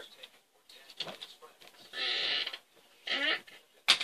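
Brief breathy vocal sounds from a person, a few short bursts, then a sharp click near the end.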